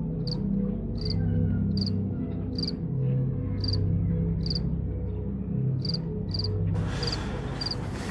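Crickets chirping in short, high chirps about once a second, over low, sustained background music with a steady drone. A hiss comes in near the end.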